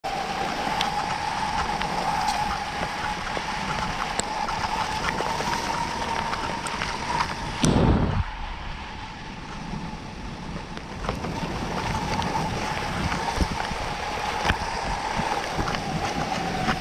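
Skis hissing over groomed snow at speed, with wind rushing over the microphone and a steady whistling tone underneath. About eight seconds in, a loud low buffet of wind hits the microphone.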